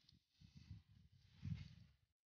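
Faint, uneven low rumbling noise with a light high rustle, loudest about one and a half seconds in, as dry cut branches are gathered up by hand off the ground.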